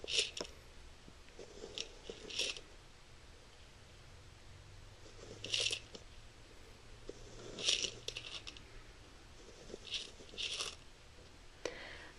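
Lampworked glass pieces tumbling and clinking inside a stained-glass kaleidoscope's object chamber as it is turned. They fall in short bursts of light, high clicks every couple of seconds.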